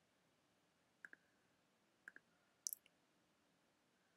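Quiet clicks of a computer mouse or keyboard against near silence: two quick pairs of clicks about a second apart, then a sharper, louder cluster of clicks shortly after.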